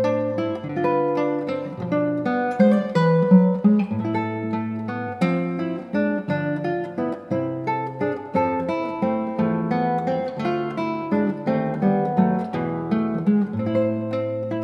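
Nylon-string classical guitar played solo fingerstyle: a steady run of plucked melody and arpeggio notes over held bass notes.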